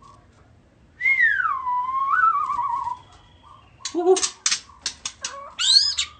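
White-rumped shama singing: one long whistled note gliding down and ending in a warble, then a run of sharp clicks and a quick rising note near the end.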